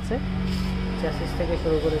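A man speaking from about a second in, over a steady low hum.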